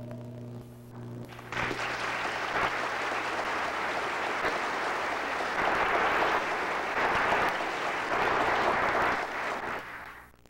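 Audience applauding, breaking in about one and a half seconds in over the accompaniment's last held chord and keeping up until it fades out near the end.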